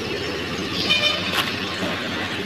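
Steady low rumbling noise, with a short high-pitched toot about a second in and a faint click just after it.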